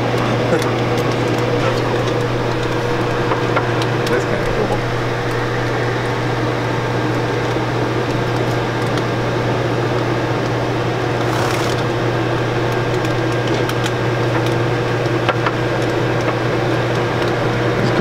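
Chocolate enrobing machine running steadily, its wire-mesh conveyor, chocolate pump and blower giving a constant low hum with a thin higher tone over it. There are a few light ticks and a short hiss about eleven seconds in.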